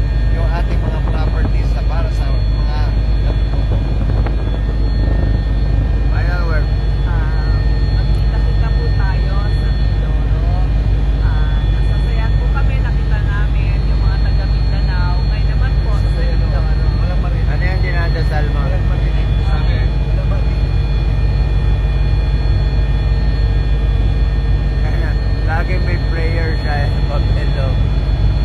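Helicopter cabin noise in flight: a loud, steady drone from the rotor and engine, deep and constant, with a steady high whine over it.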